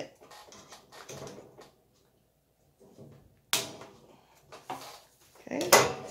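Scissors snipping the tail off a nylon zip tie and hands handling a black wire-grid storage cube: a sharp click about halfway through, small ticks after it, and another knock near the end.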